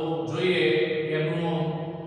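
A man lecturing in a steady, drawn-out speaking voice, trailing off near the end.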